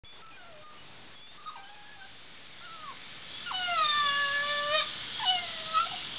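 A Vizsla puppy whining: a few faint short whines, then a long high whine about halfway through, followed by two shorter ones.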